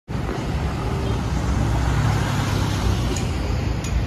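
Street traffic with a light cargo truck driving past close by: a steady engine drone and tyre noise, swelling a little about halfway through.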